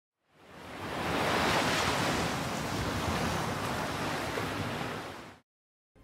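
A steady rushing noise like ocean surf fades in, holds for about four seconds and fades out to silence.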